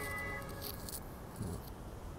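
Power tailgate warning beeper of a 2021 Toyota Fortuner giving one last short high beep at the very start, the end of its beeping series as the tailgate finishes its powered movement. Then there is only faint handling noise with a couple of light clicks.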